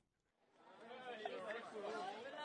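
Silent for the first half second, then faint background chatter of several voices fades in and builds.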